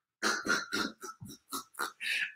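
A man's breathless, wheezing laughter: a run of short gasping bursts, about four a second, fainter than his speaking voice.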